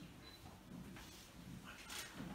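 Near silence: quiet room tone, with a faint brief high tone a fraction of a second in.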